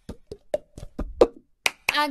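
About a dozen sharp taps or knocks in quick, uneven succession, some louder than others.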